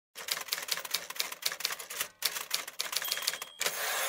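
Typewriter keys clacking in a fast, uneven run, with a short pause about two seconds in, ending in a longer sliding sound.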